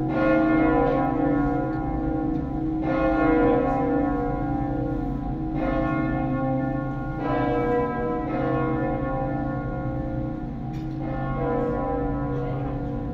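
A peal of three swinging bronze church bells, tuned B, C-sharp and D-sharp (all slightly flat), rung in the battaglio cadente (falling-clapper) style. Strokes land unevenly every one to three seconds, each leaving a long ringing hum that overlaps the next.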